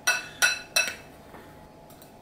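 A metal spoon clinking against the side of a glass mixing bowl while stirring a dry powder mix: three quick strikes in the first second, each ringing briefly.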